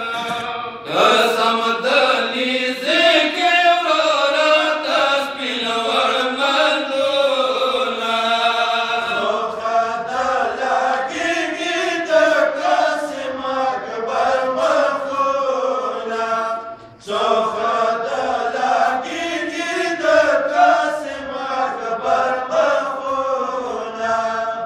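A group of men chanting a Pashto noha, a Shia mourning lament, through microphones in a slow, wavering melody, breaking off briefly about two-thirds of the way through.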